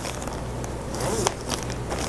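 Plastic zip-lock bag holding a wet charcoal and psyllium mixture being pressed shut and handled, giving faint crinkling and a few small clicks.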